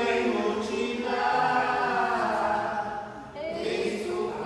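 A group of voices singing a hymn together in long held notes, with a short break about three seconds in before the next phrase. It is the offertory hymn of the Mass, sung while the gifts are prepared at the altar.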